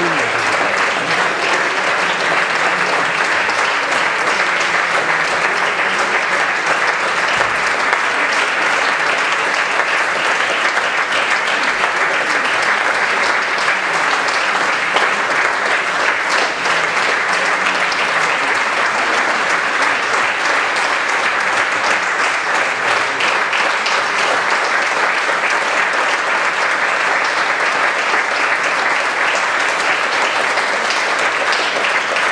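Steady applause from a large seated audience, a dense even clapping.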